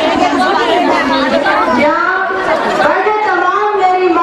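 Speech only: a woman addressing a crowd over a microphone, her voice continuous and loud, with crowd chatter under it.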